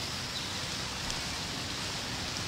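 Steady outdoor ambience from a film soundtrack: an even, soft hiss with no distinct events.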